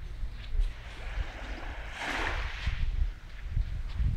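Gentle waves of a calm sea lapping onto a sandy shore, with one soft wash about two seconds in. A low wind rumble on the microphone runs underneath.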